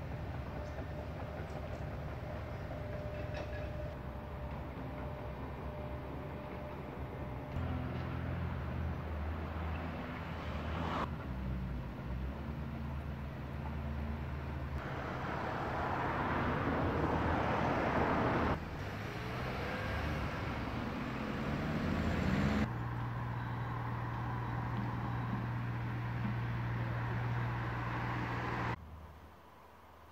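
Outdoor ambience in several short spliced segments, mostly a steady low rumble with road traffic. An engine rises in pitch about twenty seconds in, and the sound drops away sharply just before the end.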